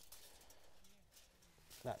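Near silence: faint outdoor background hiss, with a man's voice starting near the end.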